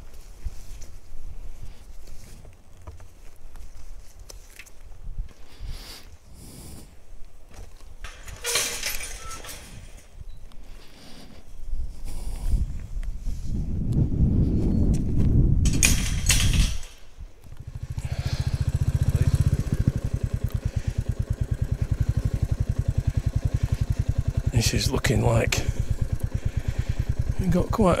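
Scattered knocks and clanks as a metal field gate is opened, with a louder rumble midway. From about two-thirds of the way in, the Royal Enfield Classic 350's single-cylinder engine runs steadily with an even, quick beat.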